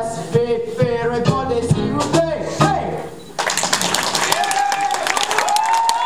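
A song with singing and instrumental accompaniment cuts off abruptly about halfway through, and an audience breaks into applause, with some voices calling out over the clapping.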